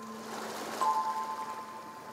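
Slow lullaby of bell-like music-box notes, a new pair struck about a second in and left ringing, over the soft wash of a sea wave that swells and fades in the middle.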